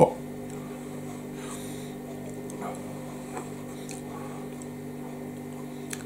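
Steady low electrical hum in a small room, with a few faint soft ticks.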